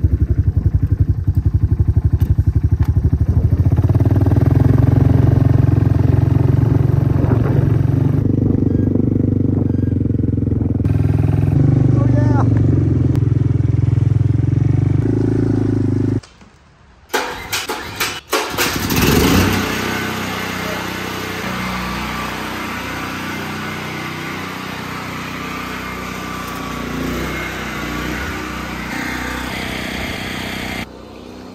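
Quad (ATV) engine running as it is ridden, getting louder about four seconds in and cutting off suddenly a little past halfway. A few sharp knocks follow, then a steady, noisier rumble.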